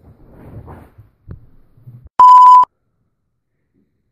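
A single loud, steady electronic beep, a censor-style bleep tone lasting about half a second, a little past the middle. Before it come faint rustling and shuffling sounds as a person gets up off a leather couch.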